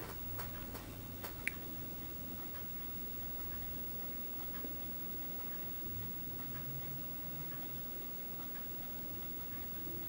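Faint small clicks of fine metal tweezers handling a tiny photo-etched brass part, the sharpest a single short metallic tick about a second and a half in, over quiet room tone.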